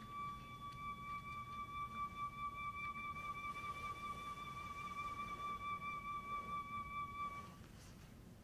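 Concert flute holding one long high note with a gentle vibrato, which fades out near the end.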